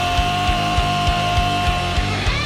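Heavy metal song: fast, steady kick drum strokes under a long held note that ends near the end.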